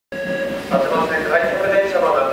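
Sound inside the cab of a Toyo Rapid Railway 2000 series electric train moving off slowly, with a steady hum. A muffled voice comes in over it just under a second in.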